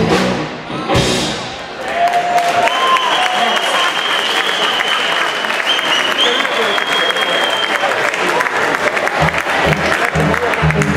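A live band's song ends with a final hit about a second in, then the audience applauds and cheers, with a long high tone held over the clapping for several seconds.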